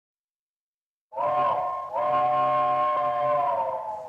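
Steam locomotive chime whistle blowing two blasts, a short one and then a long one, sounding a chord of several notes that sags slightly in pitch as the second blast dies away.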